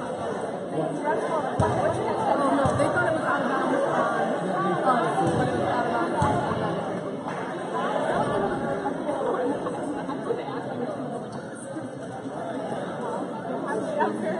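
Many people talking at once in a large gymnasium, a steady echoing crowd chatter, with a few dull thumps here and there.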